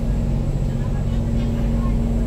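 Steady low background hum with a rumble beneath it, unchanging throughout.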